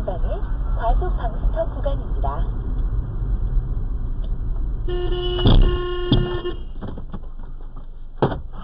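Car horn sounding one long blast of about a second and a half, over the steady engine and road rumble inside a moving car. The blast comes as a van pulls out from the kerb into the car's path.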